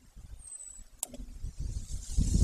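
Wind buffeting the nest camera's microphone, a low irregular rumble that grows louder toward the end. A single sharp click comes about a second in, and a brief faint high whistle just before it.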